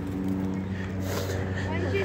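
An engine running steadily, a low even hum.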